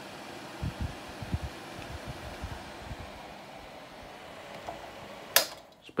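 A Dyson 12-inch bladeless desk fan and a Status 14-inch tower fan spinning down after being switched off: a steady rush of air that slowly fades. A sharp click comes near the end, and then the fan noise drops away.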